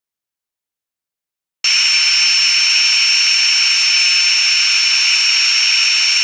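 Craft heat tool blowing hot air: a steady high whine over a rushing hiss, starting abruptly about a second and a half in after total silence. It is heating puff paint so that it lifts into a fluffy texture.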